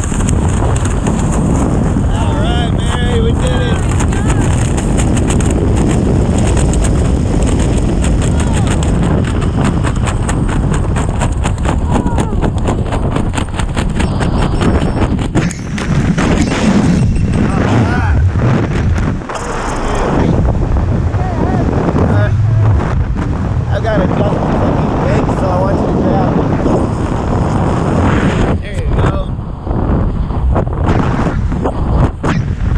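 Loud wind rushing over a body-worn camera's microphone under an open parachute canopy, a steady roar with brief dips. Indistinct voices come through the wind now and then.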